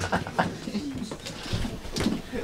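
A person's voice making short, pitched vocal sounds with small glides in pitch, not words.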